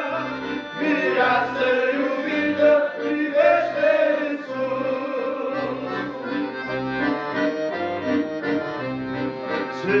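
Da Vinci piano accordion playing a slow tune with a left-hand accompaniment of alternating bass notes and chords, with men's voices singing along in harmony.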